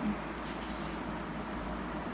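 Steady background hiss with faint rustles of fingers rubbing dried peel-off face mask residue.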